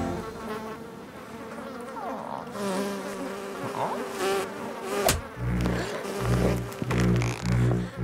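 A cartoon bee buzzing, wavering as it flies around. Just after five seconds a sharp click, then low, regular thuds about twice a second.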